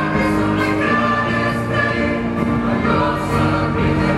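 Mixed choir of men and women singing a song in harmony, accompanied by keyboard and a drum kit keeping a steady beat.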